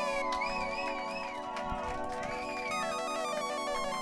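Mixed music: held chords under wavering, gliding lead tones. About three quarters of the way in, a fast repeating pattern of short notes starts.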